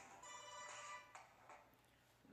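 Mobile phone ringtone playing a faint electronic melody, cut off about a second in when the call is picked up.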